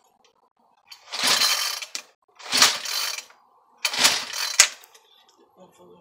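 Recoil starter of a Craftsman gas string trimmer being pulled three times, each pull a rasping whirr of about a second. The engine cranks but does not yet run.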